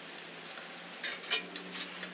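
Sharp metallic clinks and rattles from an engine hoist as the hanging engine is moved, a cluster of them a little past a second in and a few more near the end.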